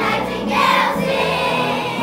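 A chorus of young children singing in a school musical.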